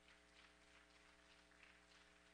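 Near silence: a faint steady hum with faint, irregular rustles and ticks.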